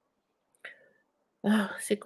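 Dead silence, a brief faint sound about half a second in, then a woman starts speaking about a second and a half in.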